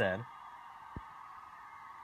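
A man's voice finishing a word, then a pause filled by a faint, steady high hum in the background, with a single soft click about a second in.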